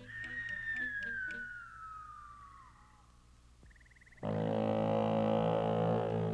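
Animated-film soundtrack: a whistling tone glides slowly downward for about three seconds. After a brief lull, a loud, sustained, low droning chord comes in suddenly about four seconds in.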